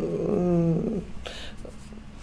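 A woman's drawn-out hesitation sound, one held vocal 'mm' of about a second with a slightly wavering pitch, followed by a short breath.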